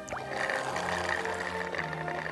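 Cartoon background music with sustained notes, joined about half a second in by a hissy, liquid-sounding water effect as rainwater is drawn up through the tree's roots.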